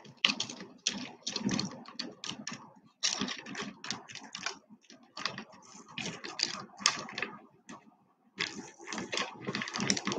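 Strands of turquoise and stone beads clicking and rattling against each other as necklaces are handled and arranged on a display bust: irregular runs of small clicks, with a short lull about eight seconds in.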